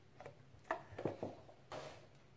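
A few light, irregular clicks and taps from handling a small plastic measuring spoon and a cardboard box, then a short breathy hiss near the end.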